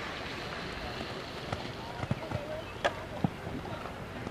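Outdoor ambience with a steady rush of wind on the microphone and faint distant voices, broken by a few sharp thuds in the second half.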